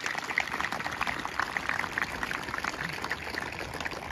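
Crowd in the stands applauding, a steady dense patter of many hands clapping.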